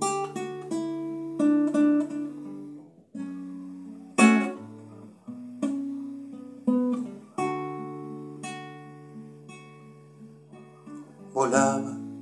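Nylon-string classical guitar playing an instrumental passage: fingerpicked notes and chords left to ring and fade, with a few sharper strummed chords in the middle.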